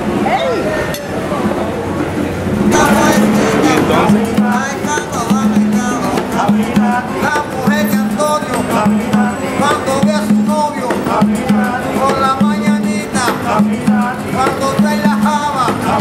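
Small Cuban street band playing acoustic guitars in a steady rhythm, with voices over it. The music starts about three seconds in; before that there is street noise and talk.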